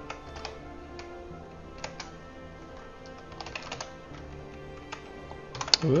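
Computer keyboard typing in short bursts of keystrokes with pauses between, over faint background music.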